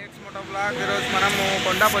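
A man talking over a steady hiss of wind and road traffic.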